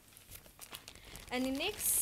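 Plastic packaging being handled, rustling faintly, with a sharp crinkle near the end.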